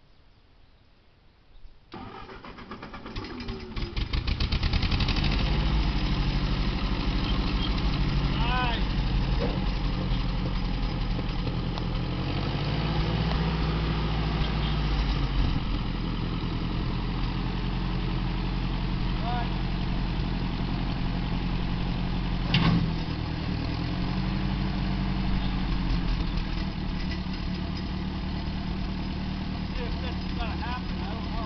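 Old Ford tractor's four-cylinder petrol engine cranking and catching about two seconds in after being refuelled, then running steadily, with a single sharp knock about two-thirds of the way through.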